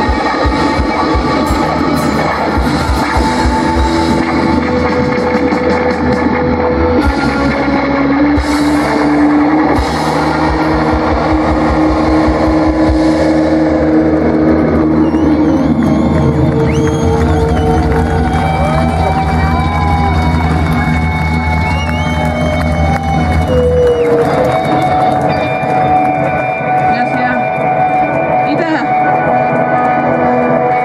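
Live rock band with electric guitars, bass, drums and keyboard playing loud through the stage amplifiers. Drums drive the first half. Around the middle a note slides down in pitch, and the band moves into held chords with bending, wavering guitar notes. A low held part cuts off a little past three quarters of the way in.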